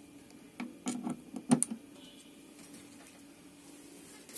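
A few short clicks and knocks in the first two seconds, the loudest about a second and a half in, from the dissolved oxygen probe's plugs being pushed into the meter's sockets.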